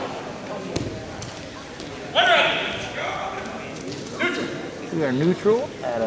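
Loud shouts from coaches and spectators echoing in a gymnasium, with several separate calls about two, four and five seconds in.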